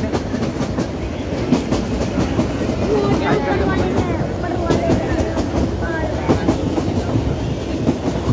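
Kangra Valley Railway narrow-gauge train running along the track, a steady rumble of wheels on rails heard from inside the coach at an open window.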